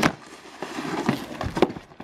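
A snowboard knocking and clattering against wooden boards, with several knocks and the sharpest about one and a half seconds in.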